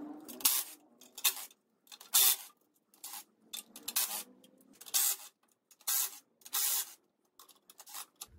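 A cordless power driver spinning out the 13 mm bolts that hold the windage tray on an LS engine, in short runs about one a second with brief pauses between.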